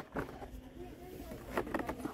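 Quiet shop background between remarks: faint distant voices over a low steady hum, with a few light clicks or rustles near the end.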